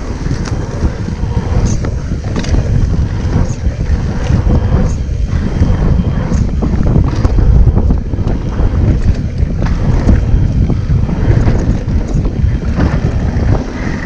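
Wind rushing over an action camera's microphone as a mountain bike rides fast down a dirt trail, with steady tyre rumble and frequent short knocks and rattles from the bike going over bumps.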